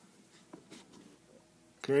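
Faint scattered small clicks and scratches of a hand-held camera being handled and adjusted, followed near the end by a man's voice saying "okay".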